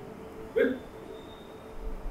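A single short vocal sound, a brief grunt- or hiccup-like noise from a person, about half a second in, over a faint steady background.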